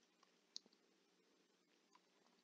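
Near silence, with a single faint computer mouse click about half a second in.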